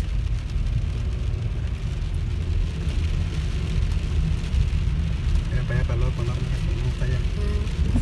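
Low, steady rumble inside a car driving in rain, with an even hiss of tyres on the wet road and rain on the windshield.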